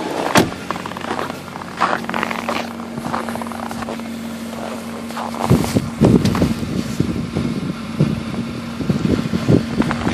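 2009 Jeep Patriot's 2.4-litre four-cylinder engine idling steadily while it warms up after a cold start in sub-zero cold. The exhaust rumble grows louder about halfway through, at the tailpipe, with a thunk shortly after the start and short knocks over the idle.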